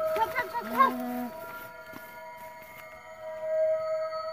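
A drawn-out vocal cry with held and wavering pitch for about the first second, then an ambient background-music drone of steady held tones, like a singing bowl, that carries on.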